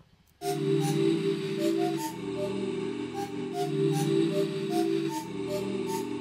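A beat loop playing back: sustained synth chords in a minor key, changing about every one and a half seconds, under a short repeating melody of higher notes. It starts about half a second in.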